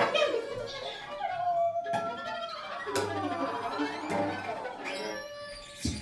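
Free-improvised bowed string playing on violin, viola and cello: sparse, with sliding pitches and a few sharp clicks.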